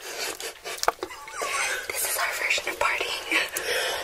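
Soft whispered talk over scattered clicks of tongs and chopsticks against bowls and a tray of saucy food during a mukbang.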